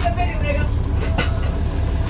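Steady low rumble of a moving bus's engine and road noise heard from inside the cabin, with voices over it and a sharp knock about a second in.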